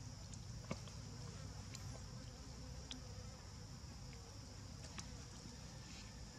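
Steady high-pitched drone of insects, with a few faint sharp clicks scattered through it.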